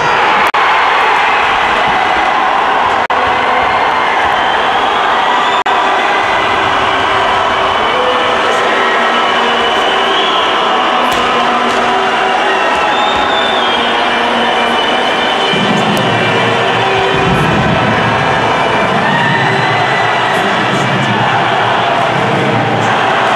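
Loud, continuous noise from an ice hockey arena crowd reacting just after a goal, with long held high tones running through it.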